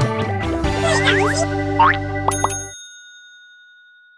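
Short cartoon-style logo jingle: music with rising whistle-like glides and two bell dings about two and a half seconds in. The music then cuts off and high ringing tones from the dings fade away.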